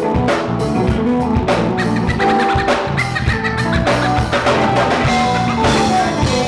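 Live band playing: a drum kit keeps a steady beat of snare and kick hits under held keyboard notes.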